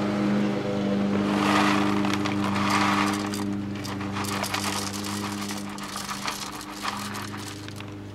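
Gardeners' lawnmower engines drone steadily, easing off near the end, under the crinkle of a coffee bag and the small clicks of coffee beans pouring into a stainless steel hand grinder.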